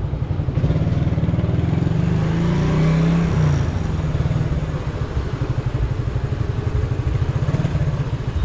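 Motorcycle engine running at low road speed with a fast, even beat of firing pulses. The engine note rises briefly about two to three seconds in, then settles back.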